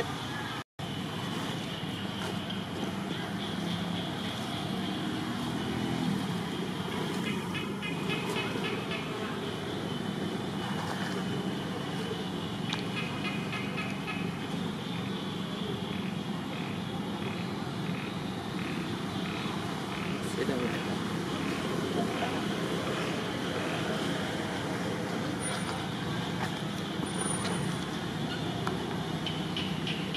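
Steady outdoor background of distant traffic and indistinct voices, with a short high chirp repeating about twice a second for several seconds midway.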